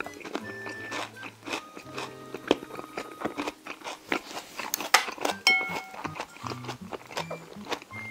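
Light, playful background music of short held notes, over a person chewing with many small crisp crunches and clicks.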